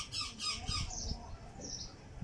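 Young fantail pigeon squab squeaking: a quick run of high, thin peeps about four a second, each falling in pitch, with one more peep near the end.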